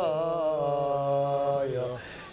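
Male voice chanting a Yazidi religious hymn (beyt) in the qewals' style, holding one long, slightly wavering note that falls away near the end.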